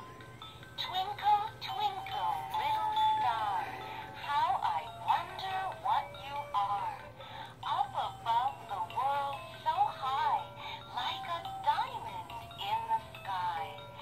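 A musical plush lamb toy playing a song in an electronic singing voice, starting about a second in.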